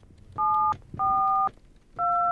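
A number being dialed on a touch-tone telephone: two keypad tones, each a pair of steady pitches sounded together, the second slightly longer than the first.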